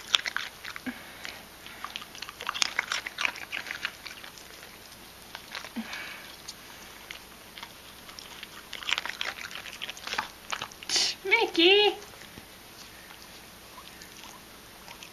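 A dog crunching carrot pieces eaten from a hand, in runs of short crisp bites, with a brief wavering voice near the end.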